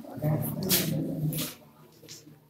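An indistinct person's voice for about the first second and a half, with no clear words, then quieter.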